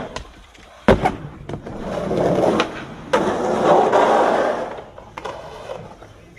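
Skateboard on concrete: a loud board slap about a second in, then the wheels rolling across the concrete, with a few sharper clacks of the deck.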